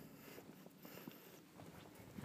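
Near silence, with a few faint footsteps on asphalt.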